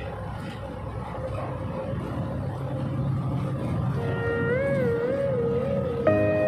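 Bus engine and road noise heard from inside the cabin, a steady low rumble that slowly grows louder as the bus moves along. About two-thirds of the way through, a wavering pitched tone comes in over it and rises and falls a few times.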